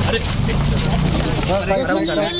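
Several people talking and calling out over a steady low rumble, with the voices loudest near the end.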